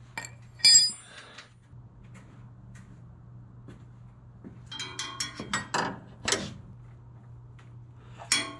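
Metal clinks and knocks as a starter motor is worked up into place against the engine and steering rack and seated by hand: one sharp ringing clink about a second in, then a cluster of clinks and knocks a few seconds later, over a low steady hum.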